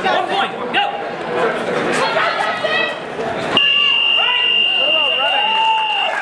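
Spectators' voices and chatter, then about three and a half seconds in a match timer buzzer sounds a single steady high tone that holds over the voices, the signal that time is up in the sparring bout.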